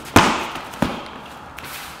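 Knee strikes landing on a Thai pad held against the body in the clinch: two sharp smacks about two-thirds of a second apart, the first louder.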